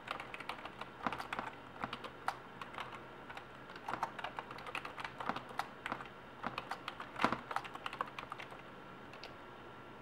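Typing on a computer keyboard: irregular runs of key clicks, with pauses between words, that stop about a second and a half before the end.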